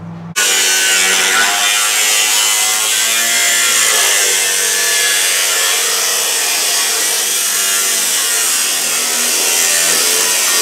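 Abrasive cutoff wheel cutting through the steel floor of a Jeep TJ body tub. It starts suddenly just under half a second in and runs on steadily with a high whine over a grinding hiss.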